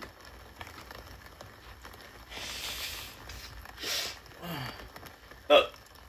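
A man belches once, short and loud, near the end, after a couple of brief hissing noises. He puts the belching down to a loose, cut throat muscle.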